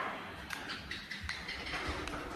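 Footsteps on a laminate floor: soft thuds with light clicks, about one step every two-thirds of a second.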